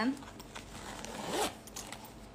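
Metal zipper on a black fabric bag being pulled open in one long pull, building up and stopping about a second and a half in.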